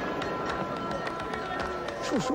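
Busy street ambience: a mix of voices with frequent short clicks and clatters, under a few steady held musical tones that stop just before the end.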